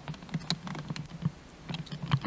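Handling noise: a run of irregular light clicks and taps close to the camcorder's microphone, as papers and the camera are handled.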